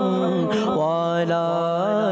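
A man's voice chanting a melodic devotional recitation, unaccompanied, with long held notes that slide and turn from one pitch to the next.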